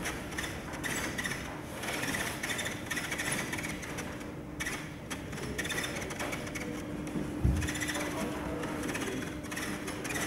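Gondola lift station machinery heard from inside a cabin creeping through the terminal: a steady mechanical hum with rattling. There is one thump about seven and a half seconds in.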